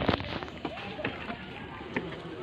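Handling bumps and rubbing on a phone microphone as it swings, a sharp thump at the start and small clicks after it, with faint voices of people walking by.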